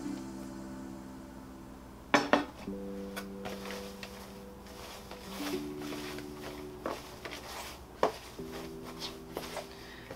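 Soft background music of sustained chords that change every couple of seconds. A few sharp clicks and knocks come about two seconds in and again near eight seconds, from a metal watering can and a plastic bowl being handled.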